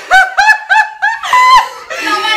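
High-pitched human laughter: a quick run of short, squeaky yelps, about four a second, ending in a longer one about a second and a half in.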